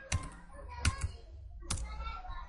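Computer keyboard typing, a few separate keystrokes at an uneven, slow pace as a short word is entered.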